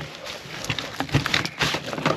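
Handling noise: a string of light clicks and knocks as a drill bit and a DeWalt rotary hammer are handled and the bit is brought to the chuck.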